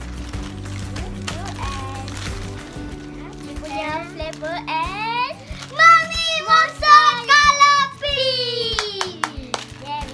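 Children shrieking and exclaiming in excitement over soft background music, loudest from about six to eight seconds in, with one long falling cry near the end.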